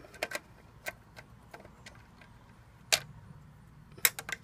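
Scattered light metallic clicks and taps of a screwdriver working the wire terminals of an RV converter's 12-volt fuse block, with one sharper click about three seconds in.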